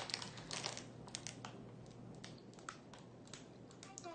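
Faint, irregular clicks and crinkles of a plastic Twizzlers package being handled, a little busier in the first second.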